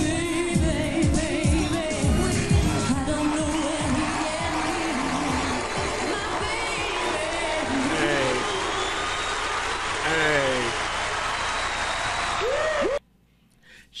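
Live pop recording: a female singer with band, a steady drum beat under the singing for the first few seconds, then sung vocal runs over a dense wash of sound. The music cuts off abruptly about a second before the end.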